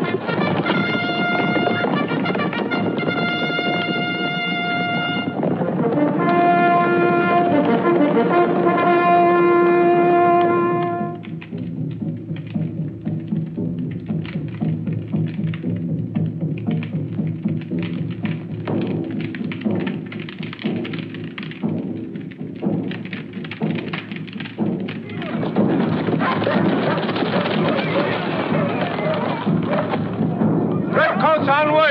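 Orchestral film score. Long held brass notes, one high and then one lower, fill roughly the first ten seconds, then give way to a busier passage with many short beats.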